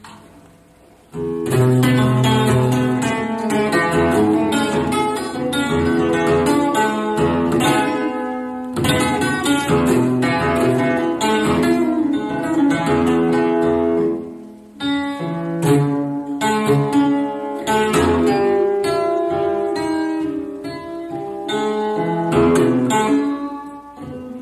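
Solo acoustic guitar played hard and fast: dense runs of plucked notes and chords with sharp string attacks, starting abruptly about a second in and breaking off briefly in the middle.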